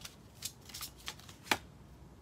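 A deck of cards being handled to draw a single card: a few soft flicks and taps, with one sharper snap about one and a half seconds in.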